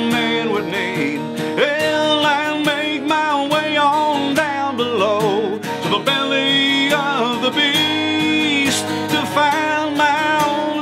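Acoustic guitar strummed under a man's singing voice: a solo country song played live.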